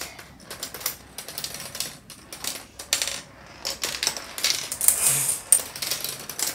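Marbles running down a Turing Tumble board, clicking and clacking irregularly as they drop through the plastic bits and flip them. This is the test run of an AND-gate build with both inputs set. There is a louder stretch of clattering about four and a half seconds in.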